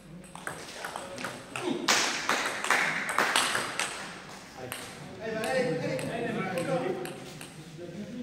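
Table tennis rally: the ball clicks sharply and quickly back and forth off the bats and the table. The clicks are loudest around two to three seconds in, and people's voices follow in the second half.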